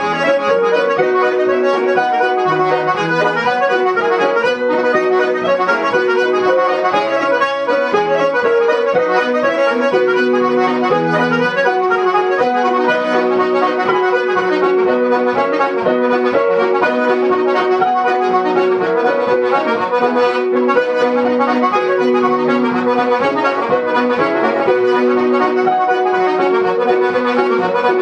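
Irish reel played on a B Monarch melodeon, a quick, even run of reedy notes, with piano chords accompanying it in a steady rhythm.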